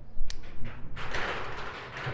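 Wago-style lever connector and wires being handled on a workbench. There is a sharp click about a quarter of a second in, then rustling and light knocks from about a second in as the wires are moved about.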